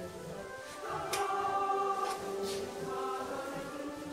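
Music: a choir singing, with long held notes in harmony.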